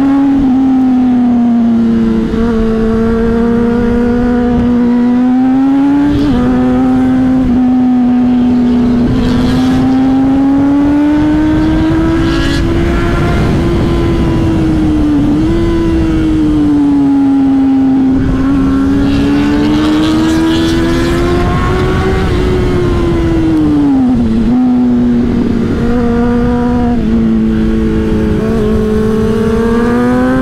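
Honda CBR600RR inline-four engine heard from the rider's seat while riding, its pitch climbing and dropping back several times with throttle and gear changes. Wind rushes over the microphone underneath.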